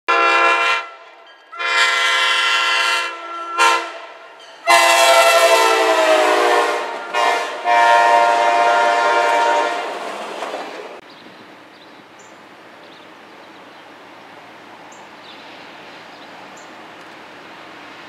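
Diesel locomotive multi-chime air horn sounding a series of loud chord blasts, short ones at first and then longer, held ones. The horn fades out about eleven seconds in, leaving a faint steady trackside hiss.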